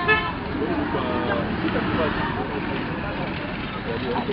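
Street noise with voices talking in the background and traffic, and a short vehicle horn toot right at the start.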